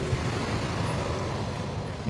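Steady outdoor background noise: an even rumble and hiss with no distinct events.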